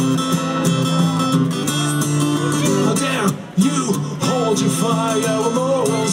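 Acoustic guitar strummed in a steady rhythm, played live through a PA, with a short break in the strumming about three and a half seconds in before it picks up again.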